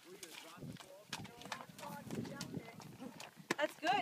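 A horse's hooves stepping and splashing through shallow muddy water, a run of short irregular knocks and splashes, with voices talking over them toward the end.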